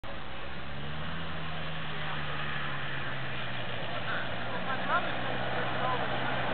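An ATV's small engine running steadily as it approaches, a low even hum under a steady hiss.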